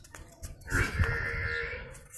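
Cattle mooing once, a single steady call lasting a little over a second, starting just under a second in.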